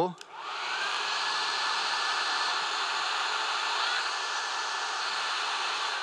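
Electric blower-powered toilet-paper cannons switched on and running: the motors spin up to a steady whine within about a second, then a continuous rush of air. The rolls were loaded wrong, so the blowers run without the paper flying.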